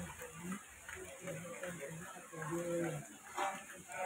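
Faint voices speaking, with one drawn-out voiced sound about halfway through.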